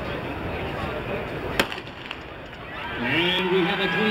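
A starting gun fires once, a single sharp crack about one and a half seconds in, starting a 300-meter hurdles race, over a steady murmur of crowd noise.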